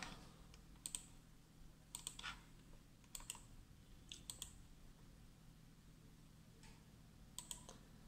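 Near silence: room tone with a faint low hum and about ten faint, irregular clicks, several in quick pairs.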